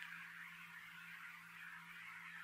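Near silence: a pause between sentences of a recorded talk, holding only a faint steady low hum and hiss.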